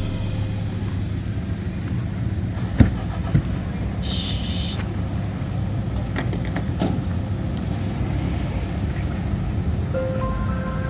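Steady low rumble of a car engine idling. There is a sharp knock about three seconds in, a smaller one just after, and a short high chirp about a second later.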